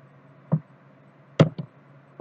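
Two sharp taps on a computer keyboard, about a second apart, the second followed closely by a lighter tap.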